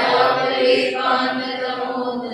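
A man chanting a Sanskrit verse in a slow, held recitation tone, his voice sustaining level pitches from syllable to syllable.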